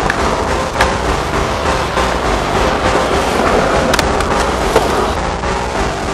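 Skateboard wheels rolling on a concrete bowl, with sharp clacks of the board about a second in and twice near the two-thirds mark, under music.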